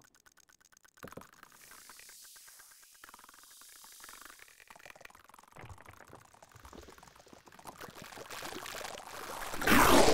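Electroacoustic music built from noise: a fast run of clicks, then a watery hiss that swells slowly into a loud burst near the end.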